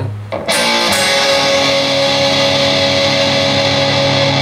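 Schecter C-1 electric guitar: the note ringing from before is cut off just after the start, then a power chord is struck about half a second in and left to ring.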